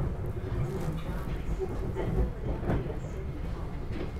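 Inside a moving SEPTA Regional Rail electric commuter car: a steady low rumble of the train running along the track, with a few faint knocks and rattles.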